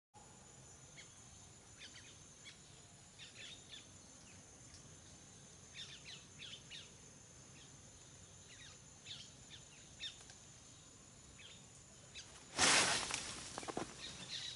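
Faint, scattered short chirps of small birds over a steady high-pitched whine. About twelve and a half seconds in there is a sudden loud rustling burst lasting about a second.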